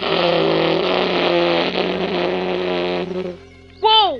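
Edited-in transition sound effect: a loud rushing noise with steady tones underneath that starts suddenly and cuts off after about three seconds.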